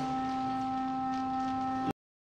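A sustained chord of background score, several steady tones held together without change, that cuts off suddenly just before the end.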